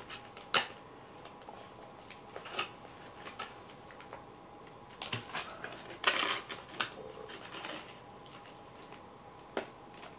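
Scattered light clicks and scrapes of a moulded plastic tray holding an N gauge model coach as it is handled, with the longest, loudest scrape about six seconds in.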